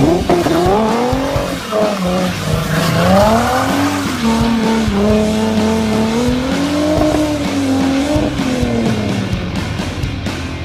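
A car's engine held at high revs during a burnout, its pitch surging up and down, with tyre squeal.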